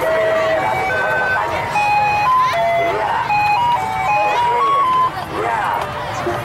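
A simple electronic jingle of pure, steady beeping notes, about three or four a second, stepping up and down in pitch, over the chatter of a crowd of children and adults.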